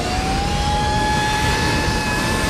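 Jet fighter engines at full thrust for a carrier launch: a whine that rises in pitch over the first half second and then holds steady over a loud roar.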